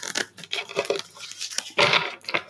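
Tarot cards being shuffled and handled: soft papery clicks and rustles, with a short louder rustle near the end.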